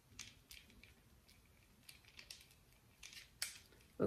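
Faint, scattered light clicks and ticks of a handheld plastic dermaroller being rolled over the back of a hand, about half a dozen in all, the clearest one near the end.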